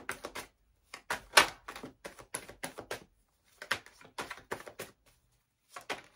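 A tarot deck being shuffled by hand: several runs of quick clicks and slaps as the cards are riffled and dropped into the pile, with short pauses between the runs.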